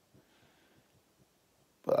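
Near silence, just faint room tone, during a pause in a man's talk; his voice comes back in near the end.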